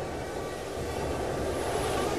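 A steady rushing rumble, even in level, with no clear strokes or rhythm.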